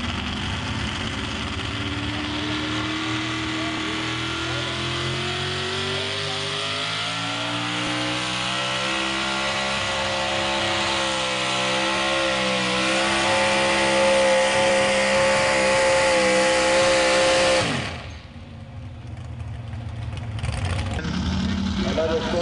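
Truck engine running hard during a truck pull, its pitch climbing slowly and steadily and its sound growing louder, then breaking off abruptly about 18 seconds in.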